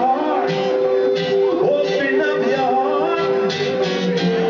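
A live acoustic band playing: two acoustic guitars with a hand drum, and long steady held notes over them.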